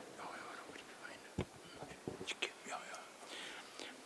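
Quiet room with faint whispered voices, and a single low thump of a microphone being handled about one and a half seconds in.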